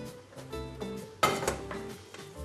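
Background music, with a wooden spoon stirring spaghetti through cream sauce in a nonstick frying pan. Just past a second in there is a short scraping clatter as the spoon works the pasta against the pan.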